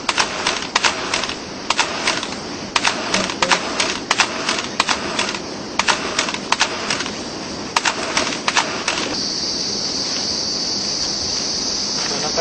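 Irregular sharp clicks and taps, about three a second, for the first nine seconds or so, then a steady high hiss.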